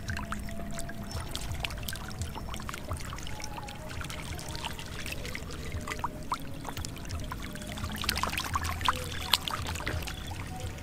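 Catfish thrashing in shallow muddy water: many short splashes and slaps of water, with two sharper splashes near the end. Background music plays underneath.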